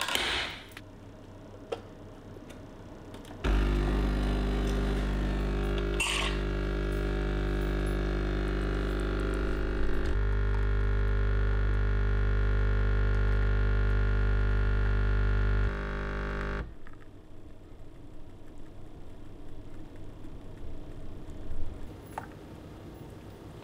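illy capsule espresso machine: a clunk as the lid is shut, then the pump runs with a loud steady buzzing hum for about twelve seconds while it brews an espresso, its tone changing about halfway before it steps down and stops.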